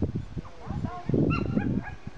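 A dog whining and yipping in short, high cries that bend up and down, several in quick succession, the loudest from about a second in.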